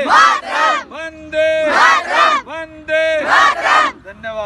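Group of boys and men chanting a slogan in call and response: a single held call is answered each time by a loud shout from the whole group, about three times in a row.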